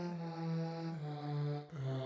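GarageBand's Girls Choir keyboard instrument: synthesized girls' voices holding a sung vowel, stepping down through about three notes, one held note per key press. There is a brief dip before the last note near the end.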